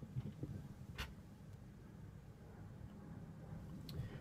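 Faint handling noises and one sharp click about a second in, as a cable's connector is fitted to a handheld Audix Fireball V harmonica microphone. A faint low hum runs underneath.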